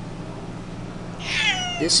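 A domestic cat gives one meow about a second in, high and falling in pitch, over a low steady background hum.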